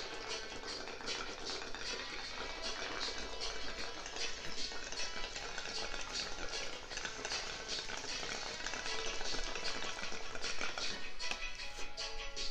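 Water bubbling in a bong as smoke is drawn through it, an irregular crackly gurgle, over background music.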